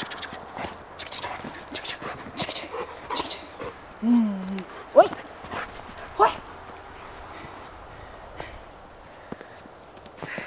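Steps crunching in fresh snow, with a dog giving a few short whines around the middle, one of them sharply rising in pitch.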